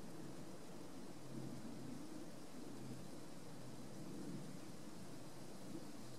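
Steady low-pitched background noise with a faint hiss above it and no distinct sounds standing out.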